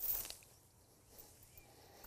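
A brief rustle of tall cover-crop stems being pushed over by a chain-weighted crimping board, lasting about half a second, then faint.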